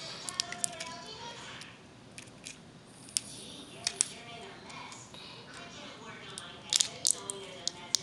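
Scattered sharp clicks and taps of small plastic toy parts being handled as a Glitzi Globes glitter capsule is pulled open, the clicks coming in little pairs a few seconds apart. Faint voices sound underneath.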